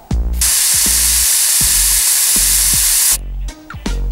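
Aerosol can of spray-on cobwebs hissing in one long continuous spray of nearly three seconds, starting about half a second in and stopping suddenly, over background music with a steady bass beat.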